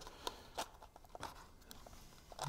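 Faint, scattered small clicks and crinkles of cardstock being handled and pressed between the fingers.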